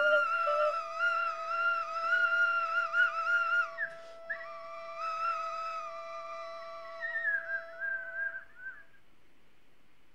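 Two wind instruments holding long high tones together: one steady and unchanging, the other wavering and whistle-like with overtones above it. The upper tone breaks off briefly with a click about four seconds in, then resumes and glides a little higher before both fade out near the end.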